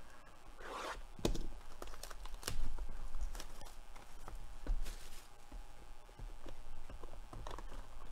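Plastic shrink wrap being torn and peeled off a cardboard trading-card box: crinkling film with a scatter of sharp crackles and clicks as the wrap gives and the box is handled.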